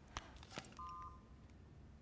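Mobile phone keypad: two faint clicks of keys being pressed, then a short two-tone dialing beep about a second in.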